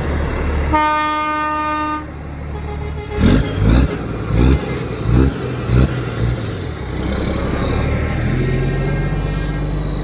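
A truck air horn gives one steady blast about a second in. Then a passing truck's engine is revved in about five short, loud bursts. Steady diesel engine noise from the convoy follows.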